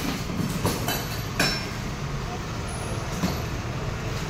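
A few short clicks and knocks of hard lock parts and tools being handled in a foam packing box, over a steady low background rumble.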